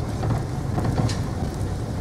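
Steady low rumble of a passenger van's engine and tyres, heard from inside the cabin while driving slowly.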